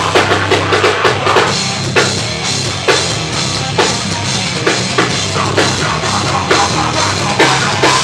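A heavy metal band playing live and loud: distorted guitars and bass under a pounding drum kit. The drum hits come quickly at first, then settle from about two seconds in into a slow, heavy beat of roughly one hit a second.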